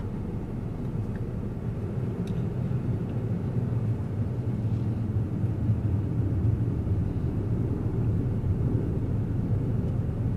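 Car engine and road rumble heard from inside the cabin as the car rolls slowly, a steady low rumble that grows slightly louder.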